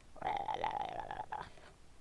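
A woman's voice making a brief wordless sound, lasting about a second.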